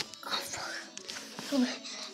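Quiet, whispered or muttered speech from a boy, with a clearer spoken voice starting near the end.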